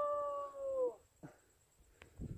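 A single long howl: one held, steady note that ends about a second in.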